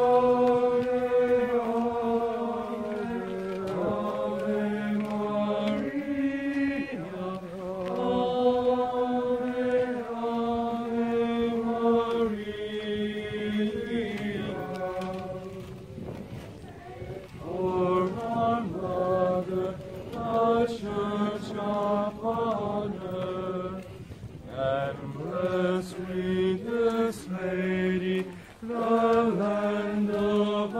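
A group of voices singing a hymn together in unison, with long held notes in the first half, then shorter, quicker phrases.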